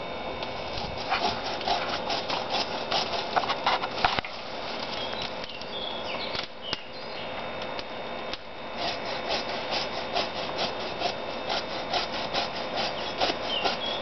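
Bow saw cutting through a pecan tree limb: quick back-and-forth rasping strokes. The strokes stop for a few seconds midway and then resume at a steady pace.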